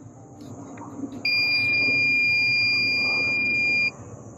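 Viking 12-volt jump starter sounding one steady electronic beep, about two and a half seconds long, starting about a second in. It is the pack's warning that it needs a charge.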